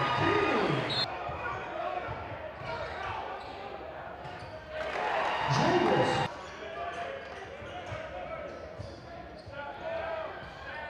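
Basketball dribbled on a hardwood gym floor during play, with voices calling out in the echoing hall, loudest at the start and again about five to six seconds in.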